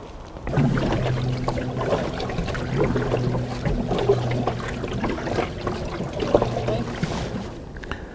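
Canoe paddle dipping and splashing in lake water. A low steady hum runs under it from about half a second in until near the end.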